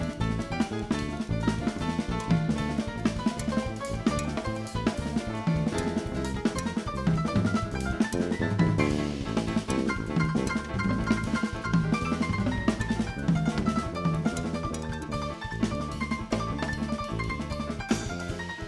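Latin jazz piano trio playing live: stage piano, electric bass guitar and a drum kit with cymbals, all playing together at a steady groove.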